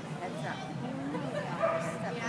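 Dogs barking and yipping over a murmur of people's voices in a large hall.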